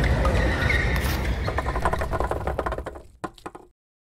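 Intro sound effect: a rumbling, hissing noise that breaks into a fast run of clicks and fades out about three and a half seconds in.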